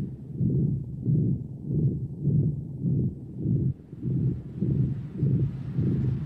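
A deep, throbbing low note in the background music, pulsing evenly about two to three times a second, with nothing higher above it.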